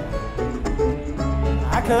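Bluegrass string band playing live (mandolin, banjo, guitar, fiddle and bass) under a male lead voice singing the verse.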